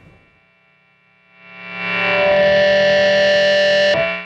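Electric guitar played through the Strymon Riverside overdrive pedal into a Fender Vibrolux amp, with the pedal's noise reduction turned up via the gain knob. After about a second of low-level quiet, one distorted chord swells in, is held, and is cut off abruptly at the very end.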